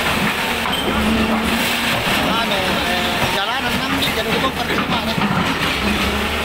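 Tracked hydraulic excavator demolishing a building: its diesel engine running under a dense, steady din of the structure being torn apart. People's voices are heard over it.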